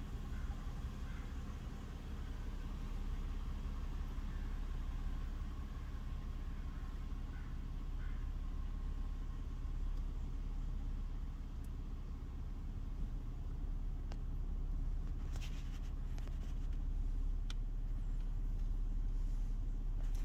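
2019 Lexus ES350's 3.5-litre V6 idling steadily, heard from inside the cabin, with the car in reverse and standing still. A few faint clicks come about three-quarters of the way through.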